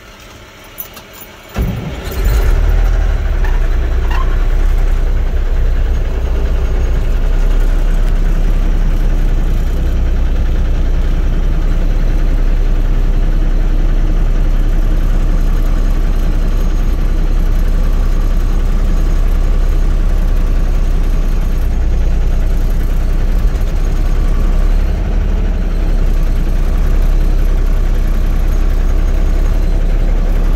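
Cummins NTC-400 inline-six diesel engine of a 1980 Peterbilt dump truck running steadily with a deep low rumble, coming in loud and sudden about two seconds in after a quieter opening.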